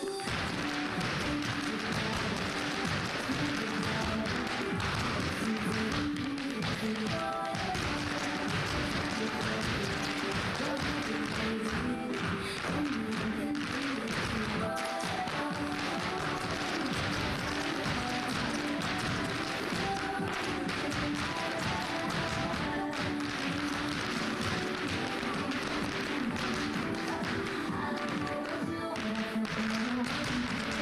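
Irish step dancers' shoes tapping rapidly and in time on a wooden floor, over a recorded Irish dance tune played through a loudspeaker.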